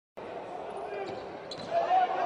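Live indoor basketball game: voices and the hum of the crowd echo through the hall, with a basketball bouncing on the hardwood court. The sound gets louder near the end.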